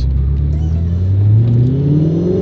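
Audi R8's 4.2-litre V8 engine heard from inside the cabin. It holds a steady low note, then about a second in the revs start climbing steadily as the car accelerates.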